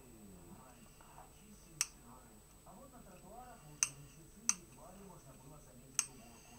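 Rotary vegetable peeler's plastic blade head clicking as it is turned on its handle: three sharp clicks, the first two about two seconds apart, the third half a second later, and a fourth right at the end.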